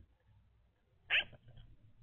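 A single short, sharp bark-like animal call about a second in, with a few fainter scraps of sound after it over a faint low hum.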